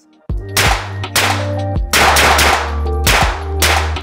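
Pistol shots fired in quick pairs, about six pairs of sharp cracks, each ringing briefly, over intro music with a steady low bass drone.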